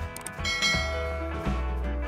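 Background music with a steady bass beat, overlaid about half a second in by a bright bell-like ding that fades over about a second: a notification-bell sound effect.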